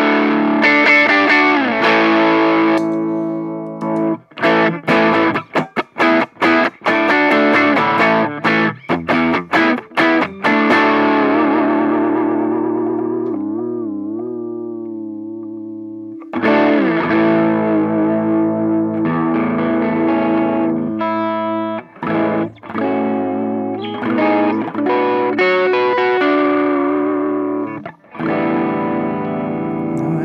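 Electric guitar played through overdrive pedals: distorted chords and riffs broken by short stops. Around the middle a chord is left to ring out, wavering in pitch. Then the playing resumes, with the MXR Timmy overdrive switched on for the second half.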